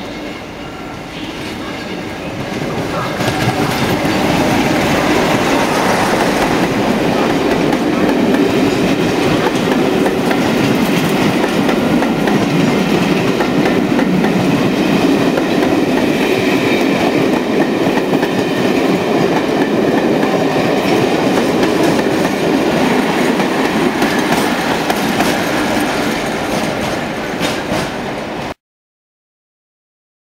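A diesel-hauled train of passenger coaches passing close by, led by a Class 47 locomotive: the sound builds over the first four seconds as the locomotive comes up and passes, then holds as a loud steady rumble of coach wheels running past on the rails.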